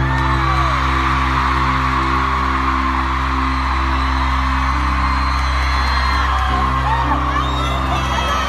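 Live band holding sustained low chords that shift a couple of times, under a steady wash of an arena crowd screaming and cheering.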